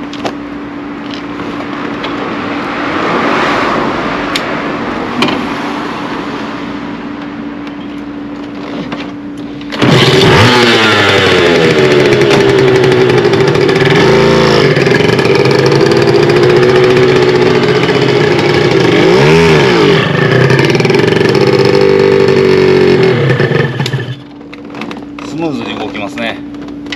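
Honda NSR250R MC18's two-stroke V-twin idling, then about ten seconds in suddenly much louder, its pitch rising and falling with two brief dips as it is revved for about fourteen seconds before it drops back to idle near the end.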